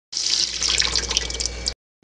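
Tap water running in a steady stream from a faucet-mounted filter, splashing into a stainless steel sink. It cuts off suddenly near the end.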